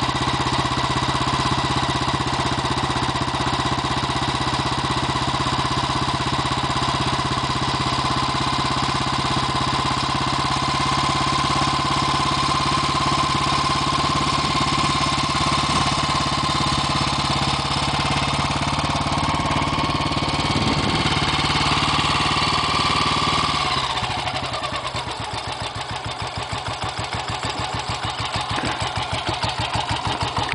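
1967 BSA 350 single-cylinder motorcycle engine idling at a fast, steady tickover. About 24 seconds in the revs drop and it settles into a slower idle with distinct, even firing beats.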